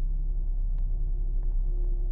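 Steady low rumble of a car heard from inside its cabin, with a faint steady hum above it.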